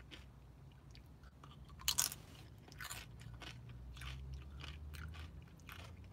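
Tortilla chip bitten with a sharp crunch about two seconds in, then chewed with crisp crunches about twice a second.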